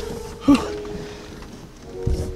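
A man's brief grunt of effort about half a second in, as he hauls himself up out of a car's footwell, with faint steady held tones underneath.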